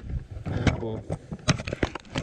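A man speaking briefly, followed by a few sharp clicks and rustles as a cloth work glove is pulled on and handled.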